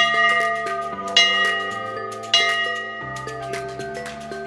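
Large brass temple bell rung by hand, struck three times about a second apart, each strike ringing on and fading before the next.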